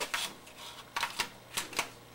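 Sharp plastic clicks and rattles as a LiPo battery pack is handled and pressed into an RC truck's chassis: a cluster right at the start, then four or five more clicks in the second half.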